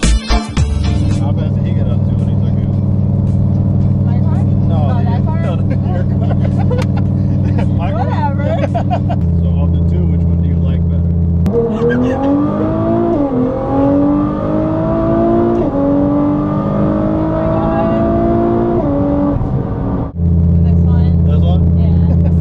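Tuned Nissan GT-R's twin-turbo V6 accelerating hard, its pitch rising and dropping back twice at upshifts, under background music. A woman laughs in the first half.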